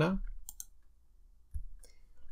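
A few short, sharp clicks from working a computer while copying and pasting an element: a pair about half a second in and fainter ones near the end.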